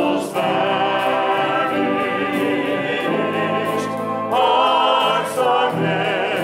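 Choir singing a worship song with orchestra accompaniment, the sustained sung notes wavering with vibrato. A new, slightly louder phrase comes in about four seconds in.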